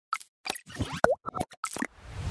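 Logo-animation sound effects: a quick run of short cartoon-like pops and blips, with a bright swooping blip just past halfway as the loudest.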